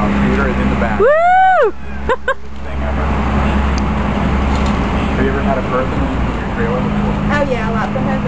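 A loud whooping yell that rises and falls in pitch about a second in, followed by two short yelps. Faint chatter and a steady low hum run underneath.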